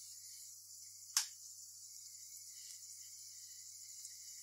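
Faint, steady sizzle of corn-flour nacho triangles deep-frying in moderately hot oil in a kadai, as more chips are dropped in one at a time. One sharp click about a second in.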